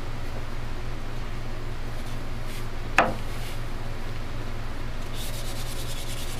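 Micro-mesh pad wet-sanding a cattle horn by hand: quick back-and-forth scrubbing strokes pick up near the end. There is a single sharp click about halfway through, over a steady low hum.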